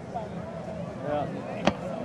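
Spectators talking, with one sharp firework bang near the end.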